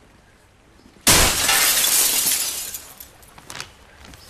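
Glass shattering: a sudden loud crash about a second in that fades away over about two seconds, followed by a few small sharp tinkles.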